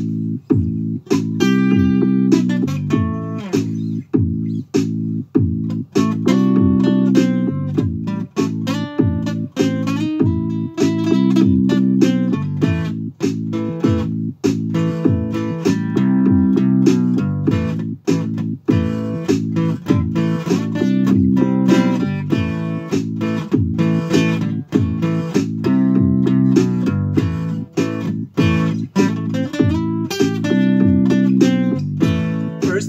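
Acoustic guitar strummed in a steady, even rhythm, the chords changing as it goes.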